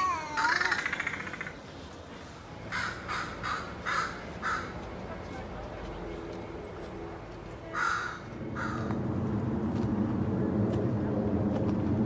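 Crow cawing outdoors: a run of about five harsh caws a few seconds in, then two more about eight seconds in. A brief warbling, voice-like sound comes at the very start, and a low rumble builds from about nine seconds on.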